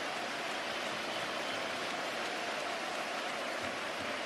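Steady roar of a large football stadium crowd, an even wash of many voices with no single shout or chant standing out.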